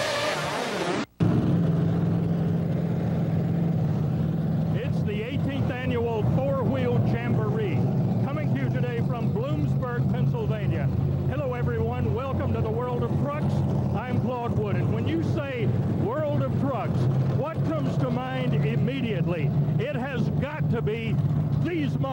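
Theme music cuts off about a second in, giving way to a monster truck's engine idling with a steady low drone.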